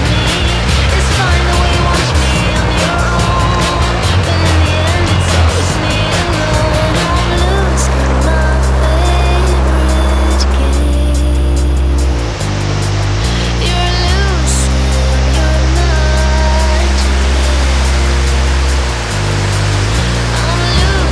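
Background music: a loud song with a heavy bass line and a melody over it, drums busy for the first seven seconds or so, then long held bass notes.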